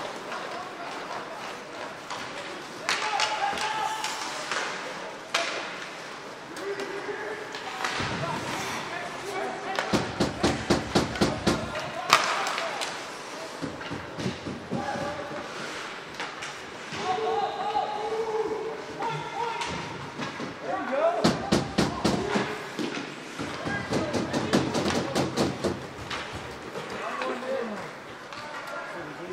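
Ice hockey game sounds: voices calling out over the play, with thuds and slams against the boards and two spells of rapid knocking, one about ten seconds in and one about twenty-one seconds in.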